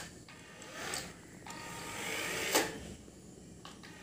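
Small electric motor and gears of a toy 2.4 GHz RC car whirring as it drives on a stone floor, swelling to a sharp knock about two and a half seconds in.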